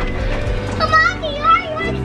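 Young children's excited, high-pitched voices calling out and chattering over one another, with no clear words.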